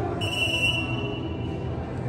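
Referee's whistle, one short steady blast of about half a second, a moment after the start, stopping play. Under it runs the low background din of the arena.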